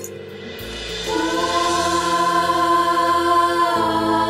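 Dramatic background music: a held choir-like chord that comes in about a second in and sustains on one pitch over a steady low drone.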